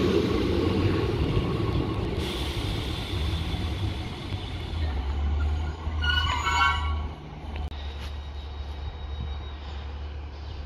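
Class 153 diesel railcar pulling away with a steady low engine rumble, loudest as the car passes in the first couple of seconds and then fading as it draws off. A horn sounds once for about a second, around six seconds in.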